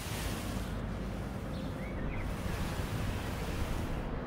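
Outdoor ambience: steady wind noise on the microphone, heaviest in the low rumble, with a faint brief chirp about two seconds in.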